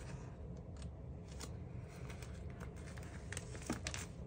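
Faint rustling and a few small clicks of clear plastic binder sleeves as photocards are handled and slid into the pocket pages.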